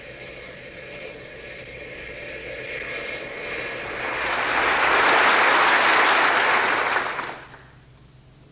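Jet airliner engines: a steady whine that swells about three seconds in into a loud, even rushing roar, which fades away shortly before the end.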